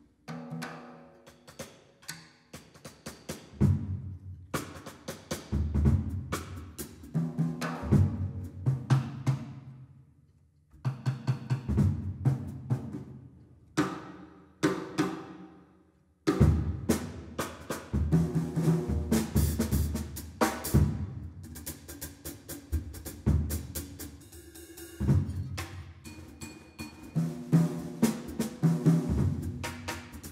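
Acoustic Yamaha drum kit played in a loose, free-time jazz passage: scattered strikes on drums and cymbals with ringing low drum tones. The playing stops briefly about ten seconds in and again about sixteen seconds in.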